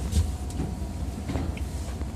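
Footsteps and light knocks on the steel diamond-plate floor of an Amfleet passenger car's vestibule, a few irregular steps, over the steady low rumble of the standing train.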